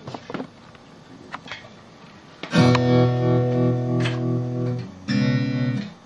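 Guitar chords played through a tremolo effect: after a few faint taps, a strummed chord rings about two and a half seconds in with an even pulsing wobble, and a second chord near the end pulses faster as the tremolo speed is being turned up.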